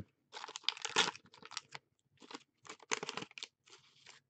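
Waxed paper wrapper of a 1985-86 Topps hockey card pack crinkling in short, irregular bursts as it is unfolded and peeled back from the stack of cards.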